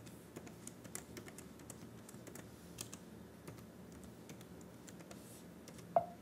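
Faint, irregular keystrokes on a computer keyboard as a password is typed at a terminal prompt, ending with one sharper key press near the end, the Enter key.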